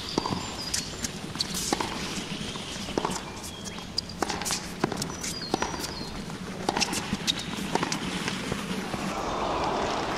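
Two runners' footsteps on a dirt trail covered in dry fallen leaves: irregular crunching steps scattered throughout, with short high chirps in the background.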